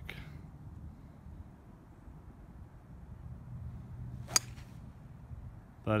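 A single sharp crack of a hybrid club striking a golf ball off the tee, about four seconds in, over a faint steady low hum.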